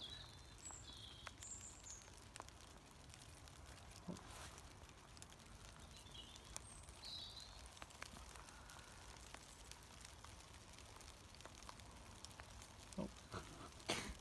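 Near silence: faint outdoor night ambience with a low rumble, a few faint clicks, and faint short high chirps near the start and again about halfway through.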